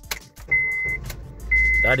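A Honda car's engine starting on a turn of the key, catching quickly and strongly and running on, while the car's warning chime beeps steadily about once a second. The quick, strong start is a sign of better battery contact, which the owner puts down to the corroded battery terminal having been the fault.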